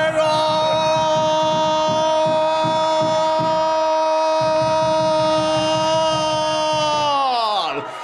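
Football commentator's long drawn-out "gol" shout for a penalty goal, one note held for about seven seconds before the pitch slides down near the end.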